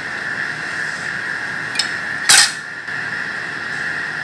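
Plastic lab containers being handled: a small click, then a single sharp plastic clack a little past the middle, over a steady high whine.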